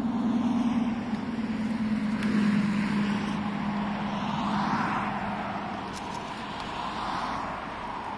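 Road traffic: motor vehicles passing on a nearby road, a steady engine hum under tyre noise that swells and fades as each one goes by, loudest a few seconds in and again near the end.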